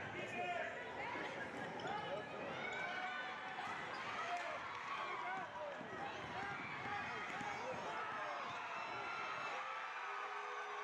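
Live sound of a basketball game, fairly faint: a ball bouncing on the hardwood court amid scattered shouts and voices from players and spectators.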